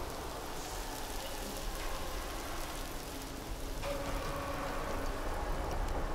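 Opening of an ambient electronic track: a dense, even, rain-like noise texture, with faint held tones coming in about four seconds in.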